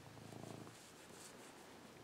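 A cat purring faintly while being stroked.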